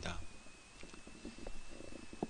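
Faint background hiss of a voice recording in a pause between sentences, with a thin, steady high-pitched whine and a few soft clicks.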